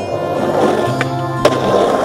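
Skateboard wheels rolling and carving on the smooth concrete of an empty backyard pool, with a sharp clack about one and a half seconds in, over background music.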